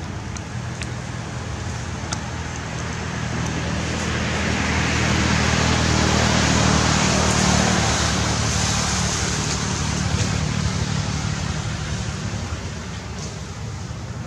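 A motor vehicle passes: a broad noise swells up over a few seconds, peaks midway and fades again over a steady low hum.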